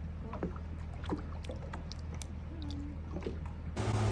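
Gentle water lapping with small splashes and ticks at a boat's stern step, over a steady low hum. Near the end it gives way to a louder rushing noise.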